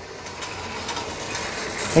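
A board being brought in to the front of the room: a rattling, scraping noise that grows steadily louder.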